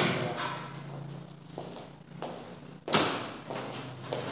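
Contactors in a star-delta motor starter panel clacking: one sharp clack at the start and a louder one about three seconds later, over a low steady hum.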